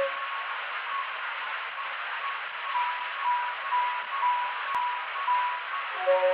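Playback of a 1905 Favorite acoustic disc recording: a steady surface hiss with no treble, under a faint instrumental introduction of short, stepping notes that grow clearer about halfway through. A single sharp click of surface crackle comes late on.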